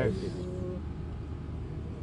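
Steady low background rumble of an outdoor gathering in a pause between a man's sentences, with his last word trailing off at the start.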